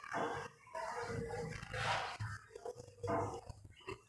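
Handheld whiteboard eraser rubbed back and forth across a whiteboard in a run of uneven scrubbing strokes, several in a few seconds, some with a faint squeak.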